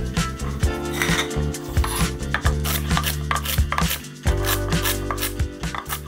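Kitchen knife chopping Swiss chard stems on a wooden cutting board, a series of quick strikes that become more frequent in the second half, over background music.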